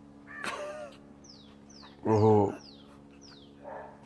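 Birds calling: a string of short, high, downward chirps repeated every few tenths of a second, with a harsh crow-like caw about half a second in and a louder, lower call at about two seconds.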